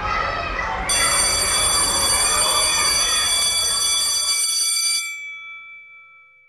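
Background noise of a crowd of children, then, about a second in, a steady high ringing tone, alarm-like, that holds for about four seconds and then fades away.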